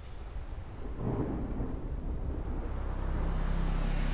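Deep, thunder-like rumble from a logo-reveal sound effect, swelling about a second in and growing gradually louder, with a low steady hum joining near the end.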